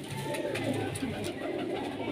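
Teddy pigeons cooing, a low continuous run of coos with a few faint clicks.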